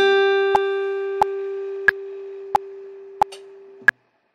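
Acoustic guitar letting a single plucked melody note ring and slowly fade, then damped just before the end. A metronome ticks steadily underneath, about three clicks every two seconds.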